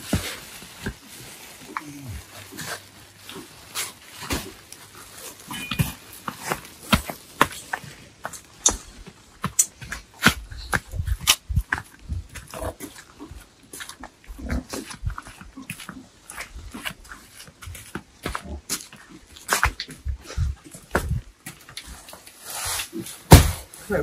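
Footsteps, knocks and the rustle of woven plastic sacks of unhusked rice being carried and handled. Near the end comes a burst of rustling and a sharp thump as a sack is set down.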